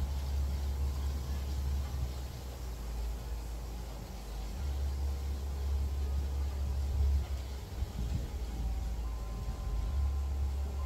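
A low, steady background rumble that eases briefly a couple of times, with a faint hiss over it.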